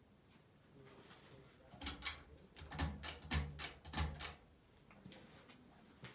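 A quick run of sharp clicks and rattles lasting about two and a half seconds as a Hampton Bay Grayton II ceiling fan is switched on from standstill to start its demo run.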